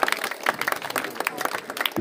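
A crowd applauding, with many people clapping their hands together in a fast, dense patter.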